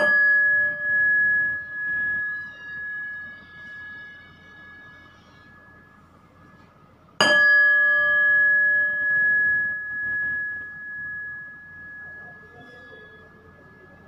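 A small metal bell struck twice, about seven seconds apart, each strike ringing out with a clear high tone that wavers in loudness as it slowly fades.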